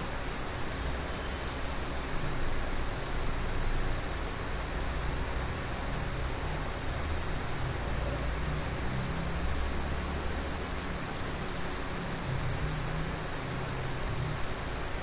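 Steady background hiss with a low hum underneath: room tone with no distinct events.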